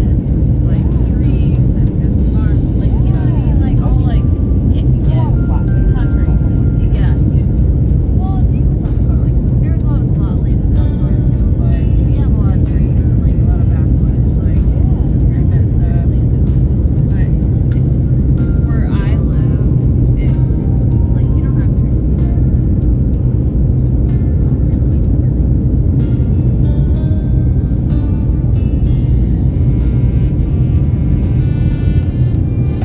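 Steady low rumble of a jet airliner's cabin in flight, the engines and airflow heard through the fuselage, with faint voices over it.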